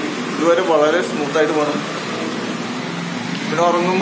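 A man speaking in short phrases, with a pause in the middle where only a steady background hum is heard.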